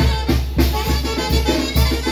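Zacatecan tamborazo band playing live: brass instruments carrying the melody over the heavy, steady beat of the tambora bass drum.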